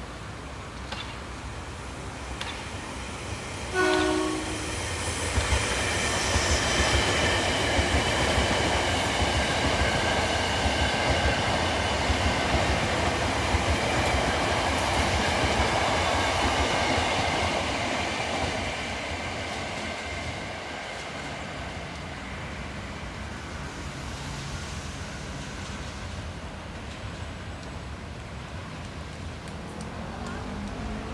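KRL commuter electric multiple unit sounding one short horn blast about four seconds in, then passing close by: the rumble and clatter of wheels on the rails swells, holds for several seconds with a steady high whine over it, and fades away.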